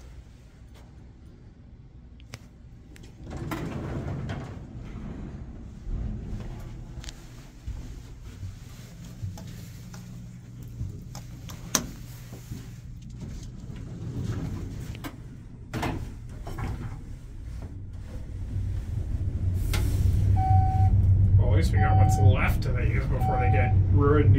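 Otis passenger elevator, modernized in the 1950s: its doors slide shut with knocks and rattles, then the car starts to travel with a low hum that grows louder. Near the end a short beep sounds about four times, roughly a second apart.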